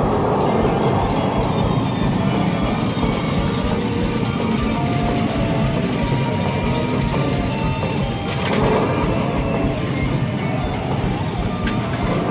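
Medal-pusher arcade machine playing its game music and sound effects over the dense, steady din of a game centre, with a brief surge of sound about eight seconds in.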